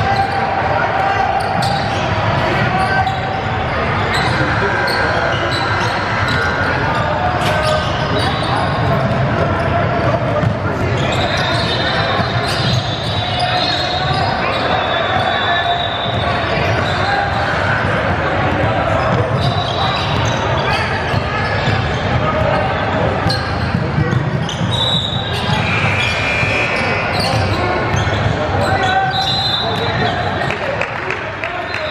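A basketball dribbling and bouncing on a hardwood gym floor, with the chatter of players and spectators in a large gym throughout.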